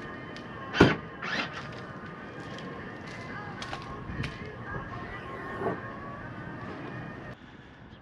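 The power tonneau cover of a 2004 Chevrolet SSR opening from the key fob. A latch clunks about a second in, then the mechanism whines steadily for about six seconds and stops shortly before the end.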